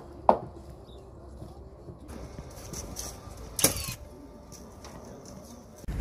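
Hammer knocking on the wooden pergola timbers: one sharp knock just after the start, ending a quick run of blows, then a lower background of work sounds with one more sharp knock about three and a half seconds in.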